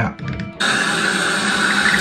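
Water starting to rush out of a shower mixing valve about half a second in, as the valve stem of a newly fitted cartridge is turned open with pliers, then flowing steadily. The flow shows that the replacement cartridge is passing cold water.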